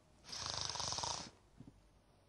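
A sleeping woman snoring: one rattling snore about a second long.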